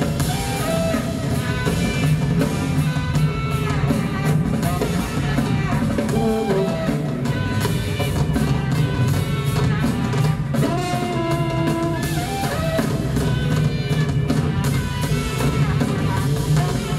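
Live jazz quartet playing: a tenor saxophone melody of long held notes over a tuba bass line and two drum kits.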